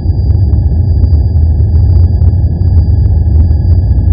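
Loud, steady deep rumble with thin high tones held above it and faint irregular ticks: an edited-in cinematic sound effect under a section title.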